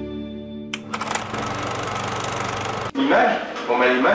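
Intro music ending, then a harsh, steady mechanical buzz with hiss for about two seconds that cuts off suddenly, followed by a voice speaking.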